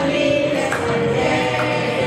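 A group of children singing a song together, holding notes in a steady melody.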